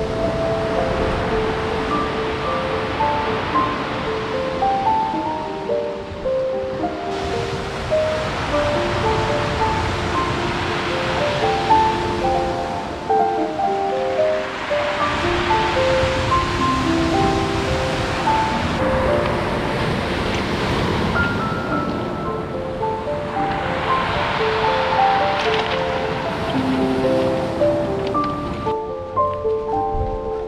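Background music, a melody of short, clear notes, laid over surf breaking on a pebble beach, the rush of the waves swelling and fading several times.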